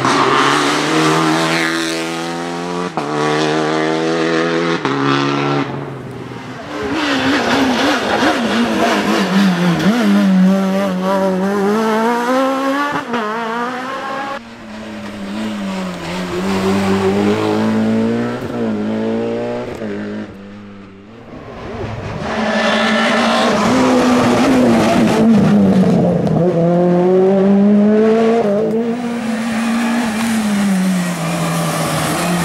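Rally cars at full throttle on a tarmac stage, one car after another: the engines rev up, drop in pitch at each gear change and climb again, with the sound switching from one car's pass to the next a few times.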